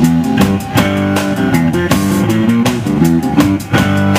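Live blues band playing an instrumental passage: electric guitars over a drum kit, with steady drum strikes and no singing.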